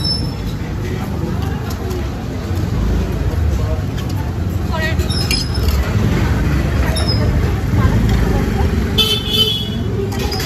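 Busy street ambience: a steady low rumble of traffic and crowd with indistinct voices, broken by short high-pitched horn toots, the clearest about nine seconds in.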